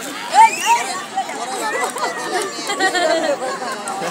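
Several voices chattering over one another, with a loud high-pitched call about half a second in.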